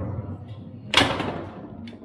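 Foosball play on a table-football table: one loud, sharp crack about a second in, the ball hit hard by a rod player. Smaller knocks of ball and rods come at the start and near the end.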